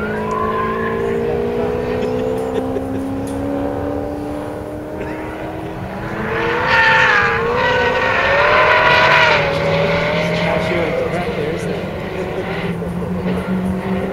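Modified GTS sedan's V8 engine heard at a distance, its note rising and falling as the car is driven sideways. Tyres squeal loudly for about three seconds in the middle, the squeal wavering in pitch as the car slides through the corner.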